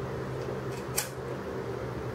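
Steady low hum of a running fan, with a single short click about a second in as a pair of metal oil filter pliers is worked in the hands.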